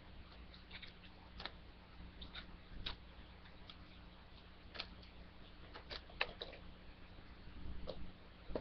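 Faint, scattered clicks and crinkles of a DVD case's plastic wrapping being picked at and peeled open by hand, the sharpest ticks coming about a second and a half in, near three seconds and twice around six seconds, over a low steady hum.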